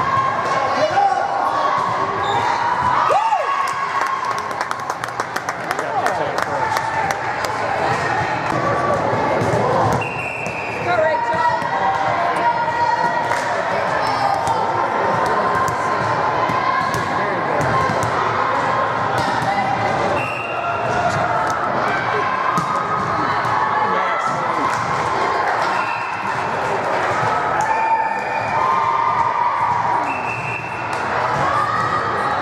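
A volleyball being struck and bouncing on a hardwood gym floor, many sharp smacks at irregular intervals, with a steady murmur of voices and calls in a large echoing gym.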